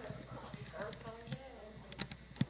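Background chatter of several voices, too indistinct to make out, with scattered short clicks and knocks.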